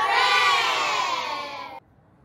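A group of young children shouting a cheer together, one long shout that slides down in pitch and cuts off suddenly near the end.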